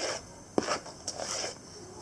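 A spoon folding cake batter in a plastic mixing bowl: soft scraping and rubbing against the bowl, with one sharp tick about half a second in.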